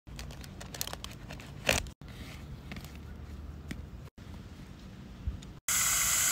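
Hands digging into loose potting mix in a plastic pot: soft crunching and rustling, broken by several sudden cuts. Near the end a spray of water starts hissing steadily into the pot.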